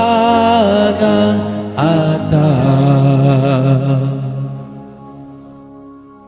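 Japanese pop ballad: a singer holds the last word of a line on a long note with vibrato, over the band. A second long sung phrase follows, then the music drops to a soft instrumental about five seconds in.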